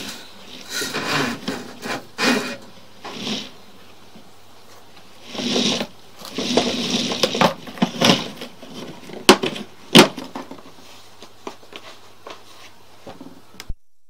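Sewer inspection camera gear being handled: irregular rustling and clattering, with two sharp knocks about nine and ten seconds in, over a faint steady low hum.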